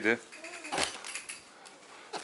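Cardboard grocery packaging being handled: a light knock about a second in as a box is put down among other boxes, with a little faint rattling around it, then low room tone.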